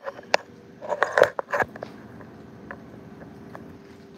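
Camera handling noise: a couple of sharp clicks, then a tight cluster of knocks and crackles about a second in as the camera is moved and set down over the work table, followed by a few faint ticks.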